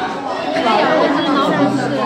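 Several people talking at once: background chatter of voices, with no other distinct sound.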